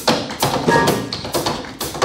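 Tap shoes striking a wooden tap board in tap dance: sharp, unevenly spaced taps several times a second.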